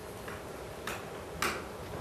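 A pause in speech: low room tone with three short, faint clicks about half a second apart.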